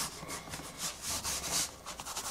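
Prismacolor Col-Erase blue colored pencil scratching over Bristol board in quick back-and-forth shading strokes, about three or four a second.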